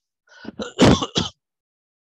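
A man clearing his throat with a few harsh coughs, a short rough cluster that peaks about a second in and stops well before the end.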